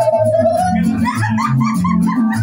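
Mariachi band playing: guitarrón bass notes alternating in a steady rhythm under regular vihuela strumming, with a single held, slightly wavering melody line above.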